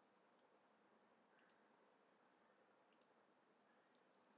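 Near silence with two faint single clicks, about a second and a half in and again at three seconds: computer mouse clicks while working through a form.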